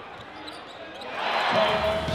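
Basketball game sound in an arena: a ball bouncing on the court with crowd noise that swells about a second in. Music with a low bass comes in near the end.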